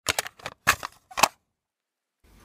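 A quick run of sharp clicks, about six in the first second and a quarter, then they stop.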